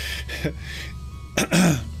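A man laughing breathily, then clearing his throat loudly about a second and a half in.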